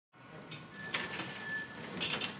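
Office bustle fading in from silence: scattered clicks and clatter over a hiss, with a thin, steady, high tone for about a second in the middle.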